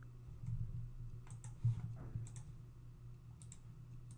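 Computer mouse clicking a few times, short sharp clicks, some in quick pairs, as points of a selection polygon are placed. A low steady hum runs underneath.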